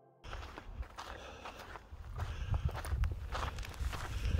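Footsteps of a hiker walking on a sandy trail, starting about a quarter second in, as irregular soft steps over a low rumble.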